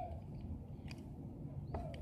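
Quiet handling of a Beyblade top over the plastic stadium: a faint click about a second in, over a low steady background hum.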